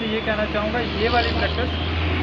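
People's voices talking over the steady low rumble of a motor vehicle's engine running close by.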